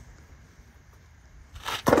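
Fingers rubbing along a self-adhesive Gator Guard keel guard strip, pressing it onto a boat hull: a loud scraping rustle that starts about a second and a half in, after a quiet stretch.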